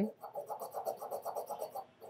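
An AR3 robot arm's J5 carrier sliding by hand along its steel linear shafts, giving a quiet, fine rattling scrape of rapid even ticks that stops just before the end.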